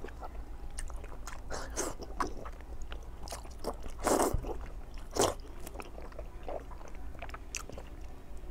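Close-up eating sounds of a person chewing soft white meat: wet smacks and clicks of lips and mouth, picked up close by a clip-on microphone, with two louder mouthfuls about four and five seconds in.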